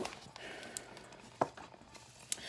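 A deck of tarot cards being shuffled by hand, faint, with a single soft click about one and a half seconds in.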